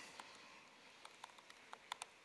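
Faint keystrokes on a laptop keyboard: a handful of separate soft clicks, closer together in the second half, while a command is typed.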